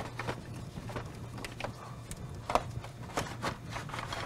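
Plastic fan shroud and electric fan assembly knocking and clicking against the engine bay as it is lifted out. The light knocks come at irregular moments, a few in quick succession in the second half, over a faint steady hum.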